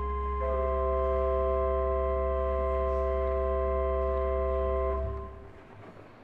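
Pipe organ holding a chord over a deep pedal note; the chord shifts about half a second in, then is released about five seconds in and dies away briefly in the room's reverberation, ending the piece.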